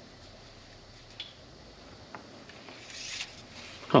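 Faint handling noise of a telescopic tenkara fly rod as its small tip plug is pulled out of the rod's end: a couple of light clicks, then a louder rubbing scrape about three seconds in.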